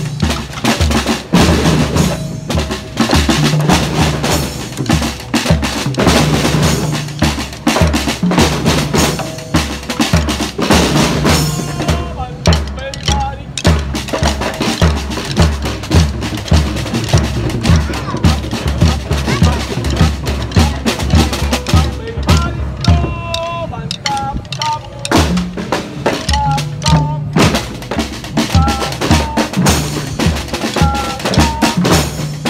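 A large group of children playing marching snare drums with sticks in a loud, steady rhythm, with regular deeper drum beats underneath.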